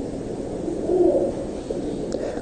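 Low room noise of a large hall picked up by the pulpit microphone, with a faint low tone about halfway through.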